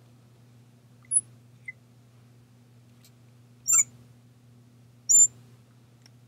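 Marker squeaking on the glass of a lightboard as parentheses are drawn: a few short, high squeaks, the loudest two near the middle and near the end.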